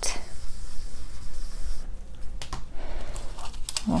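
Foam blending brush rubbing ink onto cardstock, a soft scratchy brushing, followed by a few light clicks and rustles of paper pieces being handled.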